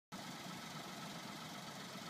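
Faint, steady hum of a small car engine idling, the Peugeot 107's 1.0-litre three-cylinder petrol engine.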